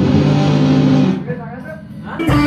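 A distorted electric guitar chord held and then cut off about a second in, followed by a short voice.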